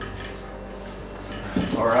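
Quiet room background with a faint steady low hum and no distinct events; a man's voice says 'all right' near the end.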